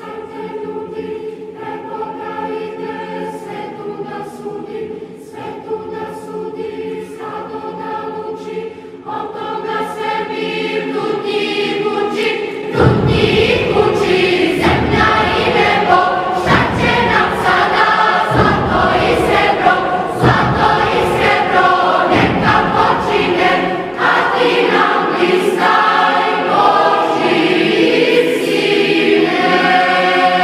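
Choir singing a Christian hymn in Serbian, in slow held chords. About 13 seconds in it swells suddenly louder and fuller, with deep beats underneath.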